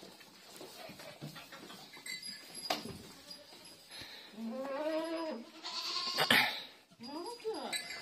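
Bleating in a pen of goats and sheep: one long call that rises and falls about four and a half seconds in, and a shorter call near the end, with a few knocks and rustles between.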